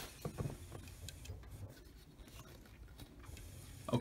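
Canon PIXMA iP3000 printhead carriage moving to its centre position after the lid is opened. It gives a few faint clicks and light rubbing in the first half second, then faint scattered ticks.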